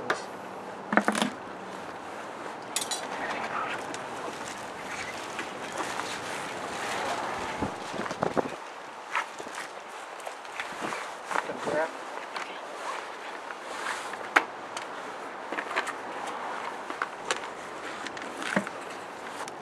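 Light knocks, taps and scraping from a large melon and a plastic cutting board being handled on concrete, over steady outdoor background noise; one sharp click stands out about 14 seconds in.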